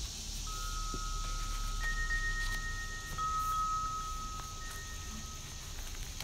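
Soft background music of chime-like tones, a few long held notes overlapping, with faint rustles and clicks of journal pages being turned.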